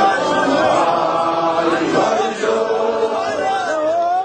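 A large congregation chanting together in unison, many voices holding long notes that slide from one pitch to the next.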